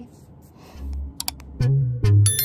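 Mouse-click sound effects from an animated like-and-subscribe button: a few quick sharp clicks just past a second in. Music with a low bass note starts near the end.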